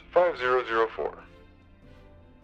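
A man's voice speaking briefly, for about the first second, over quiet steady background music.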